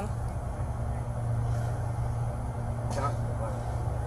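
Steady low hum of an idling vehicle engine, with no change through the pause. Brief faint speech comes in about three seconds in.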